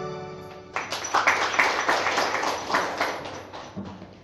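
The last held sung note of a vocal solo fades out, and about a second in a round of hand clapping breaks out and dies away near the end.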